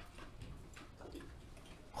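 Quiet room tone in a pause between speech, with a few faint, soft ticks or clicks.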